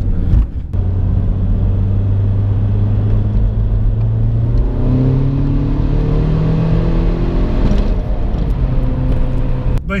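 Tuned Seat Ibiza TDI's four-cylinder turbodiesel engine heard from inside the cabin, pulling hard under full throttle. A brief dip about half a second in, then the engine note climbs steadily in pitch for several seconds as the revs rise toward the limiter.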